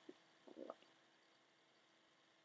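Near silence: room tone, with a few faint brief sounds in the first second.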